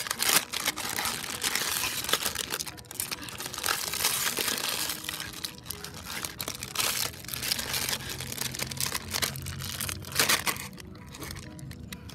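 Foil blind-bag wrapper crinkling and crackling as hands twist, squeeze and pull at it, trying to tear it open, with a few louder crackles around ten seconds in.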